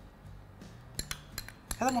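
A metal spoon clinking against a small glass bowl as cream is scooped out of it: about five quick, light clinks in the second half.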